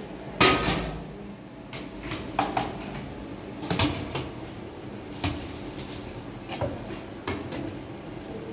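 Metal pot lids and a ladle clattering against aluminium cooking pots on a gas stove. There is a loud clang about half a second in, then a string of lighter knocks and scrapes at irregular intervals.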